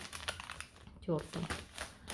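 Foil instant-coffee sachet crinkling and rustling in quick small clicks as it is handled and set down among other packets. A short bit of a woman's voice comes about a second in.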